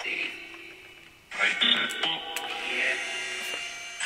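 Choppy radio-like fragments of voice and music from a phone running the Necrophonic spirit-box app, starting suddenly at the start and again about a second in, each fading away.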